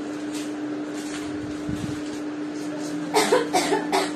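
A steady, even background hum with a few faint light clicks. Near the end comes a short burst of a person's voice.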